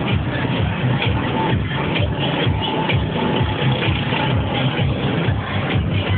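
Electronic dance music with a steady beat.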